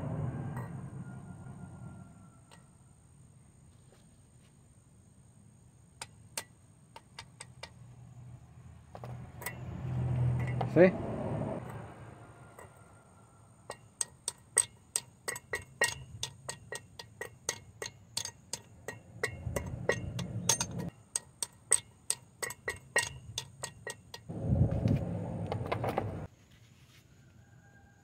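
A hammer on a metal driver adapter seats a new outer wheel-bearing race into a front hub. A few scattered taps come first. About halfway in a steady run of ringing metallic taps starts, three or four a second, and lasts about twelve seconds.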